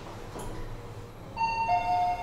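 Lift arrival chime: two steady tones, the second lower than the first, about one and a half seconds in, over a low steady hum.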